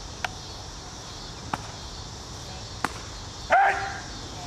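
Three sharp snaps, evenly spaced about a second and a half apart, then a single loud bark from an American bulldog near the end.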